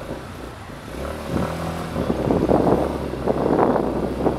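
Yamaha XT250's air-cooled single-cylinder four-stroke engine running at low revs, growing louder after about a second.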